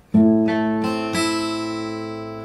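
Taylor steel-string acoustic guitar playing a chord in a loose, free tempo. More notes are plucked in just under a second and again about a second in, and the strings ring on and slowly fade.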